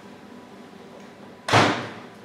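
A single sharp bang about one and a half seconds in, dying away within half a second.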